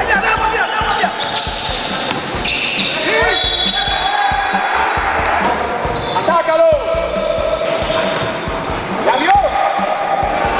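Basketball being dribbled and played on an indoor gym court, with repeated ball bounces, short squeaks of sneakers on the floor a few times, and players' voices echoing in the large hall.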